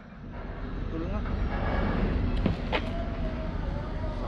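Wind buffeting the microphone, a low rumble that builds up over the first second, with two sharp clicks about two and a half seconds in.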